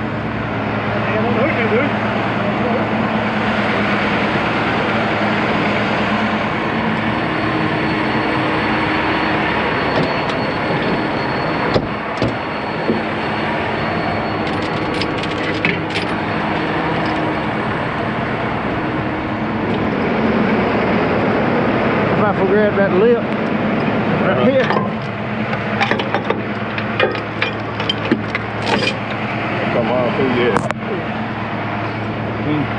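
Heavy tow truck's diesel engine running steadily, with metal chains clinking and clanking as they are pulled from the truck's chain rack, mostly in the second half.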